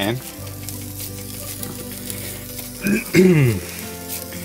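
Beef mince sizzling in a non-stick frying pan as it is pressed flat into a patty, under background music with held low notes. A short, louder, falling voice-like sound comes about three seconds in.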